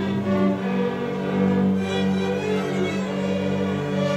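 Student string orchestra playing, violins and cellos bowing together over a held low note.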